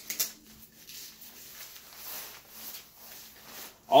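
Soft rustles and scuffs of an Eddie Bauer BC Evertherm jacket's thin nylon shell as hands handle it, with one brief louder scuff just after the start.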